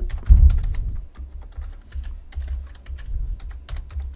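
Computer keyboard typing in irregular keystrokes, with a low thump about a third of a second in.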